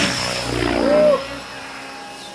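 Radio-controlled Align T-Rex 550 helicopter flying low, its motor and rotor giving a steady high whine over a rushing drone, which drops away a little over a second in as it moves off.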